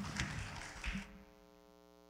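A few faint knocks and rustles in the first second, then a steady, faint electrical mains hum with a buzz of many overtones.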